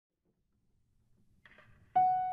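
Near silence with faint room noise, then a single grand piano note struck near the end, the opening note of the piece.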